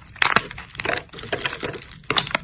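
Thin, dry soap plates being snapped and crushed between fingers: a few sharp cracks in the first second, then lighter crunching and crackling of the brittle pieces.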